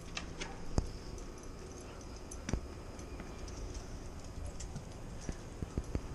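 A few scattered sharp clicks and taps over a low steady rumble: a small dog's claws and paws on the patio and walk as it moves about, with more taps close together near the end.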